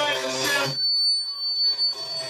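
Live open-mic music, guitar with a voice, that cuts out abruptly about a third of the way in. A single steady high-pitched tone is left sounding for about a second before the music returns near the end.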